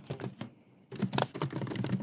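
Typing on a computer keyboard: a few keystrokes, a brief pause, then a quick run of keys from about a second in.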